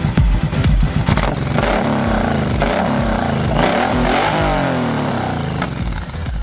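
Suzuki V-twin cruiser motorcycle with twin chrome exhausts being revved, the engine pitch rising and falling about twice. Dance music plays for about the first second and comes back near the end.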